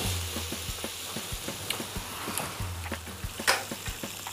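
Light crackling from buttered sandwiches toasting in an electric contact grill, over soft background music. There is a sharp knock about three and a half seconds in, as the grill's lid is handled.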